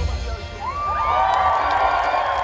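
Large festival crowd cheering and screaming as the band's song ends; the loud music stops right at the start. About half a second in, one long high cry rises above the cheering and holds for about a second.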